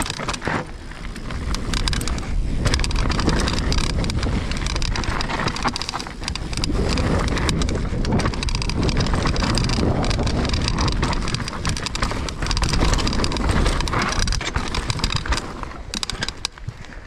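Mountain bike rolling fast down a rough dirt trail: tyres running over dirt, roots and stones, with the bike rattling and knocking over the bumps and wind rushing on the camera microphone.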